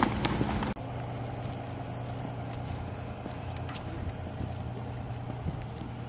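Bag and jacket rustling with sharp clicks as someone climbs out of a van, cut off abruptly after under a second. Then a steady low vehicle engine hum with a few faint clicks of footsteps on pavement.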